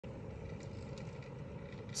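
Faint, steady outdoor background noise with a low rumble; no distinct event stands out.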